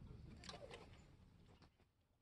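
Near silence: faint room tone with a few soft, brief sounds.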